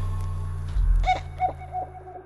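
A low drone slowly fading, then about a second in a short pitched call that bends in pitch and repeats four times, each repeat softer like an echo.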